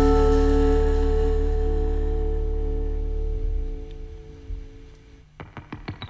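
A live band's final held chord, with electric guitar and a deep bass note, ringing out and fading away over about five seconds. Near the end, a keyboard starts the next song with quick repeated notes.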